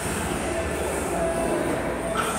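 Background music with steady room noise, an even din without any distinct knock or clank.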